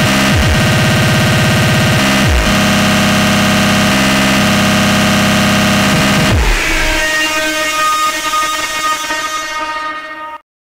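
Distorted speedcore track: a very fast, heavily distorted kick pattern blurs into a buzzing drone, with brief downward pitch swoops about every two seconds. About six and a half seconds in the low pulse drops out, leaving sustained distorted synth tones that thin out.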